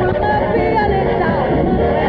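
A woman singing in a jazz-pop style over a live band accompaniment, her voice wavering and gliding between held notes.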